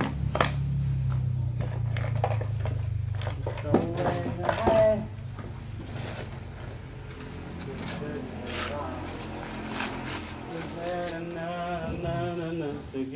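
Foam wrapping and a cardboard box rustling and crinkling as a rifle scope is unpacked by hand, with short handling clicks, a cluster of them about four to five seconds in. Voice-like sounds come in near the end.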